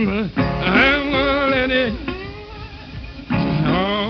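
Male blues voice singing long, wavering held notes without clear words, over guitar. The voice drops out for about a second in the middle, then comes back in.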